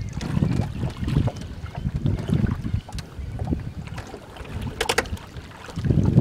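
A 14-foot sculling oar worked off a sailboat's stern, its blade swishing and churning the water in repeated strokes about once a second, with wind on the microphone. A brief clatter about five seconds in.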